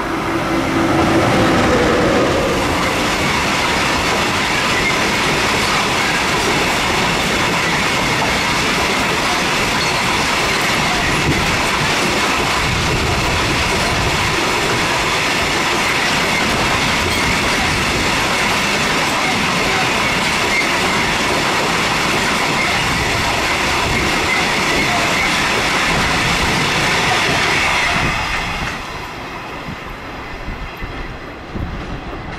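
Autorack freight train of car-carrier wagons passing close by: a loud, steady rush of wheels on rail with clickety-clack and a thin wheel squeal. It falls away sharply near the end as the train clears.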